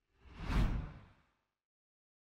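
Whoosh transition sound effect: a single swell that builds to a peak about half a second in and fades away within about a second, with a deep low end.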